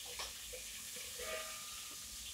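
Chopped onions frying in hot oil in a pot: a faint, steady sizzle with a few small pops.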